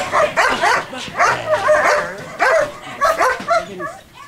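German Shepherd barking excitedly in a quick series of short barks and yelps, two to three a second, at a treat held above it.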